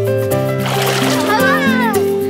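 Background music with sustained notes, over which water splashes about half a second in. Near the end a child's voice calls out, falling in pitch.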